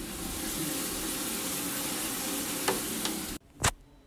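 Shower running behind a partly open bathroom door: a steady hiss of spray that cuts off abruptly about three and a half seconds in, followed by a single sharp click.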